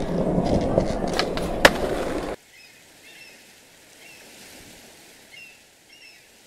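Skateboard wheels rolling, with a few clicks and one sharp clack just under two seconds in. About two and a half seconds in the sound cuts off suddenly to a quiet background with faint, short high chirps.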